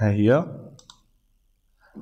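A man's voice ends a word at the start. About a second in there are a few faint computer mouse clicks.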